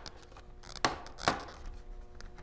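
Plastic snap clips of a laptop's bottom cover popping loose as the panel is pried up with a plastic spudger: two sharp clicks, the first a little under a second in and the second about half a second later.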